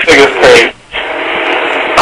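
A man laughing for just under a second, then about a second of steady hiss.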